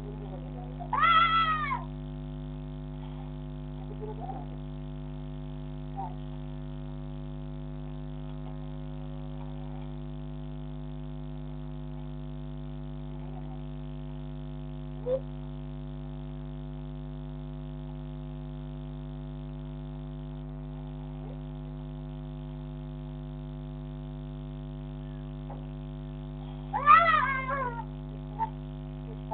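A cat meowing twice, about a second in and again near the end, each a single call that rises and falls in pitch. A steady electrical hum runs underneath, with a few faint knocks between the calls.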